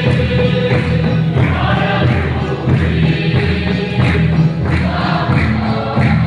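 Congregation singing a hymn together, accompanied by an electronic keyboard and a drum beating a steady rhythm about twice a second.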